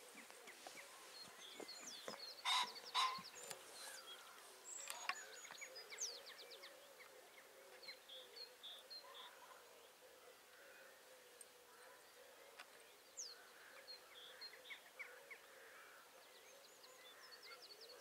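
Dawn chorus of songbirds: many overlapping chirps, trills and whistles, with two loud harsh calls close together a couple of seconds in.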